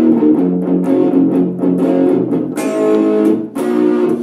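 Stratocaster-style electric guitar playing a picked blues minor pentatonic riff in F, moving through single notes and double stops. A fuller strummed chord rings for about a second, a little after halfway, before the picked notes return.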